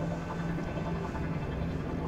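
A steady low hum in a pause between spoken lines.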